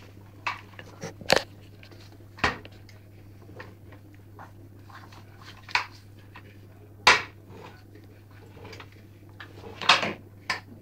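A rolling pin knocking and clattering against a kitchen countertop: a handful of sharp, irregular knocks, the loudest about a second in and about seven seconds in.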